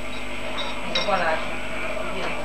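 Indistinct voices of people in a room, with a short wavering voice about a second in.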